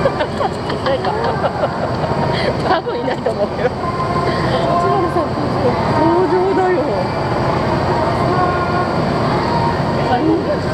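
Chatter of many people in a crowd of onlookers, no single voice standing out, over a steady low rumble. A few sharp clicks come about two and a half to three seconds in.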